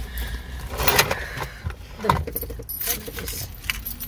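Small metal items jingling and clicking, with rustling, as a handbag is rummaged through.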